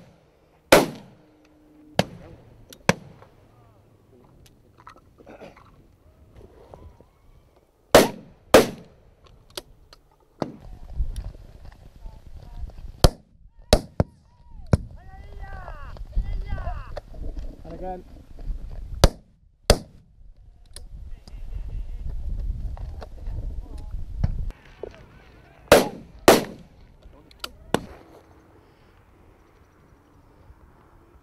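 Shotgun shots at driven grouse, about a dozen in all, mostly fired as quick doubles about half a second apart with both barrels. Some shots are fainter, from neighbouring butts.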